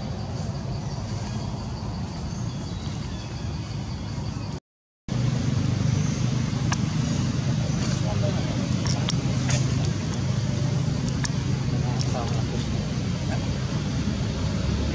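Steady low rumbling background noise, cut off for about half a second roughly four and a half seconds in and a little louder after the break, with a few faint clicks.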